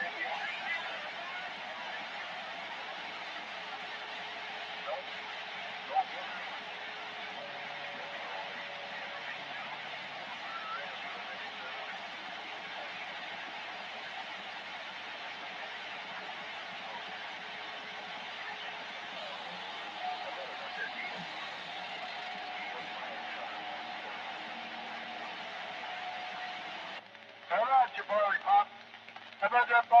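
Static hiss from a Ranger 2995 CB base station receiving AM on channel 17 (27.165 MHz), with faint distant signals and steady whistling tones buried in the noise. About 27 seconds in the hiss cuts off suddenly as a strong station comes on, and a loud voice follows.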